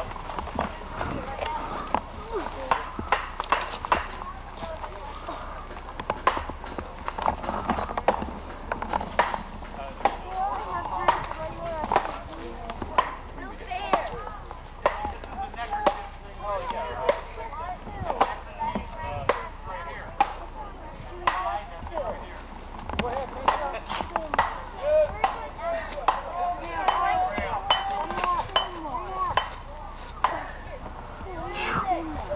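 Rotten log being worked apart by hand: irregular knocks and crunches of punky wood, with children's voices chattering in the background.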